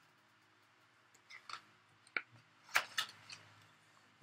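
Page of a picture book being turned: a few soft paper rustles and small taps, the sharpest a little after two seconds in and a cluster near three seconds.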